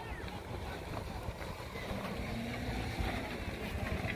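Wind buffeting a phone's microphone outdoors: a steady low rumble.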